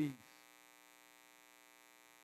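Faint, steady electrical mains hum, a low buzz with a row of even overtones and no other sound.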